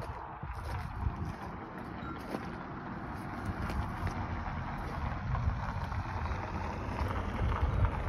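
Steady outdoor noise with an unsteady low rumble, typical of wind on the microphone; no engine is running.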